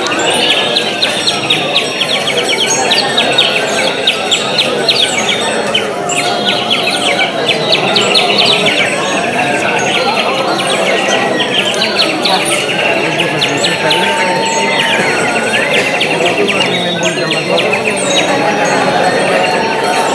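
Wind band passage played with bird-call whistles, a continuous warbling chirp and trill, over it a whistle that swoops up and down in pitch every second or two. A few short held instrument notes sound underneath.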